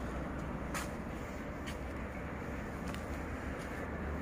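Steady low background rumble and hiss, with a couple of faint clicks.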